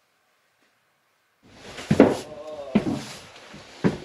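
A stiff-bristled hand brush picked up and scraped about on bare wooden boards: scraping and knocks begin about a second and a half in, loudest about two seconds in, with another sharp knock near the end.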